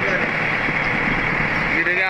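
A fishing launch's engine running steadily while the boat is under way, mixed with the rush of water and wind.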